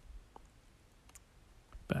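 Quiet room tone with a couple of faint clicks, then a man's voice starts right at the end.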